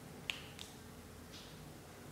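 A single sharp click about a quarter second in, then a softer click just after and a faint tick later, over quiet room tone.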